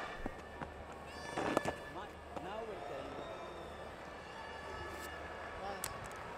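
Faint on-field sound from a cricket Test match: players' voices calling out, the loudest about a second and a half in, just after the ball is bowled, with a few sharp clicks and a low steady hum underneath.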